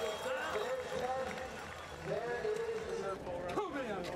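Faint, indistinct voices of people talking in the background over a steady outdoor murmur.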